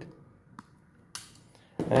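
Insulated diagonal side cutters snipping off the over-long end of a thin stranded wire fitted with a ferrule: one sharp snip a little over a second in, after a faint click.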